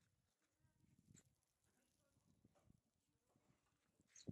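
Near silence, with a few faint, soft low knocks.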